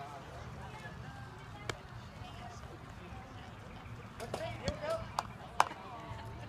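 Distant voices chattering over a low steady background rumble, with a few sharp knocks. The loudest knock comes about five and a half seconds in.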